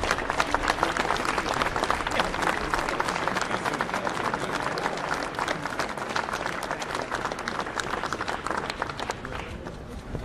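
An audience applauding, with dense, steady clapping that thins a little near the end.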